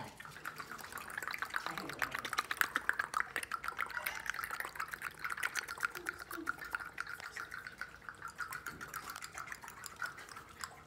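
A person making a rapid clicking, sputtering mouth sound through pursed lips, a fast run of clicks over a steady pitch.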